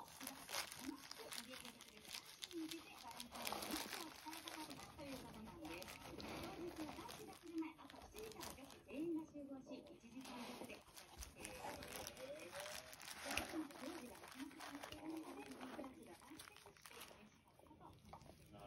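A wolfdog making short, wavering whines and grumbles over and over, with plastic wrap crinkling as it noses wrapped wild boar meat.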